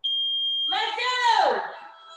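A workout interval timer gives one long, high, steady beep lasting under a second, marking the start of a 45-second work round. A woman's voice follows straight after.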